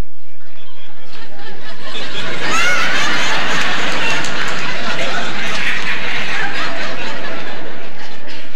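Studio audience laughing, swelling about two seconds in and going on as a loud, dense wash of many voices.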